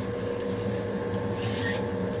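Pellet-stove exhaust fan on a homemade wood gasification boiler running steadily: a constant motor hum with one steady tone over it.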